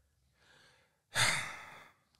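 A person sighs about a second in: one breathy exhale that fades out in under a second, after a moment of near silence.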